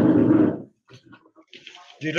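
Loud handling noise on the microphone as a computer is picked up and moved, followed by faint scattered clicks and rustles.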